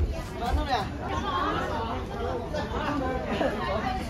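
Chatter of passers-by: several people talking.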